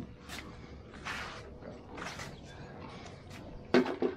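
Footsteps and rustling on a dirt path, a short noisy scuff about once a second, then a sharp knock near the end as a plastic bucket is taken up.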